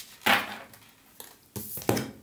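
Tarot cards being drawn from the deck and laid on a wooden tabletop: a brisk card sound just after the start that fades over about half a second, and a sharper one near the end.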